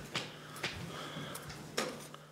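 A few light clicks and knocks, the sharpest near the end, over a low steady hum.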